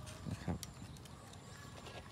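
Faint handling sounds of a caladium's bare root ball: a few light knocks and rustles of potting soil in the first second, then only faint background.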